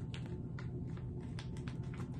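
Irregular clicks and crinkles of a plastic resealable candy pouch being worked open at its top edge with a small tool, over a steady low hum.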